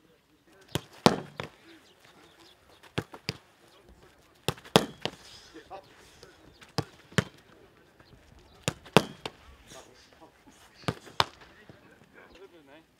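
Footballs being kicked hard at a goalkeeper: six pairs of sharp thuds about two seconds apart, each pair a kick followed a moment later by the ball's impact.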